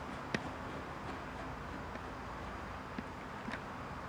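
Low steady room hum with a few faint, short clicks from a knob being screwed by hand onto the mirror's mounting bolt.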